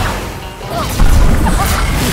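Magic energy-blast sound effects: a heavy crashing impact with a low rumble about a second in, over background music.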